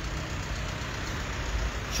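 Steady street traffic noise with a low engine rumble: a small cab-over truck driving past.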